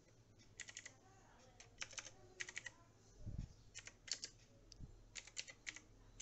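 Computer keyboard being typed on: faint groups of a few quick key clicks, with short pauses between the groups.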